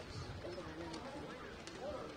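Indistinct voices calling across an open cricket ground, with a couple of faint sharp clicks.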